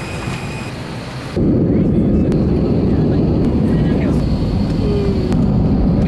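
Airliner cabin noise with passengers boarding, then about a second and a half in a sudden change to a loud, deep, even rumble of a jet airliner rolling on the runway, heard from inside the cabin.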